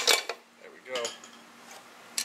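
Hammer striking the aluminium crankcase of a Yamaha Zuma two-stroke engine to split the case halves: one sharp metallic blow at the start that rings briefly, then a lighter metal knock about a second in as the loosened case shifts.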